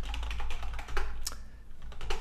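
Typing on a computer keyboard: a run of irregular key clicks as a short shell command is entered, over a low steady hum.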